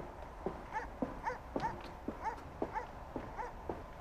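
Footsteps of a man walking on a paved sidewalk, about two steps a second, with short high chirping notes between them.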